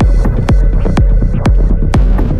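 Electronic dance music in a DJ mix: a steady four-on-the-floor kick drum at about two beats a second over deep bass, with the higher sounds thinned out and filling back in near the end.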